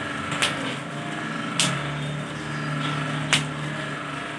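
Three short sharp clicks, spaced about a second apart, over a low steady hum.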